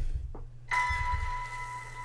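A film trailer's soundtrack opening on a single struck, bell-like tone about two-thirds of a second in, ringing on steadily and slowly fading over a low hum.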